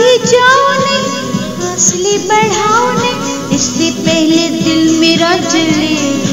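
Music of a Hindi light-vocal song, with a melody of wavering pitch over continuous instrumental accompaniment.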